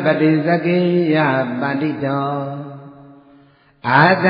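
A man's voice chanting Buddhist devotional verses on long, held notes. The last note trails off and fades about three seconds in, and after a short pause the chant starts again right at the end.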